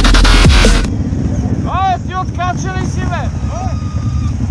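Dubstep music with a heavy beat cuts off suddenly about a second in, leaving the low steady running of several Kawasaki KFX 700 quads' V-twin engines. Over the engines come a series of short high calls, each rising and falling in pitch.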